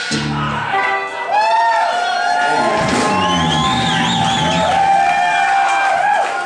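Live band ending a rock song: a low final chord in the first half-second, then gliding, wavering pitched tones over audience cheering and shouts.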